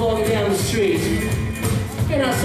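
Live rockabilly band playing a song with electric guitar, acoustic guitar, drums and upright double bass, a melodic line sliding and bending over a steady beat.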